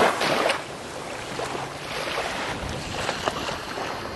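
Surf washing on the beach, with wind on the microphone. A louder rush of noise in the first half second gives way to a steady, lower wash.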